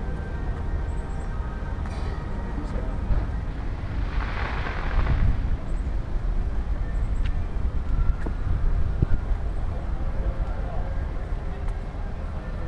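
Outdoor ambience beside a road: a steady low rumble of traffic, with a brief hiss about four seconds in.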